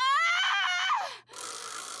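A woman's high-pitched, strained scream as she pushes in labour, held and rising for about a second before breaking off. A hissing rush of noise follows and fades away.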